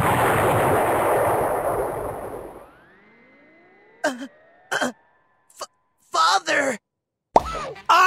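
Cartoon explosion sound effect: the rumble of a big blast fades away over about three seconds. A faint rising tone follows, levels off and holds, with a few brief vocal sounds over it.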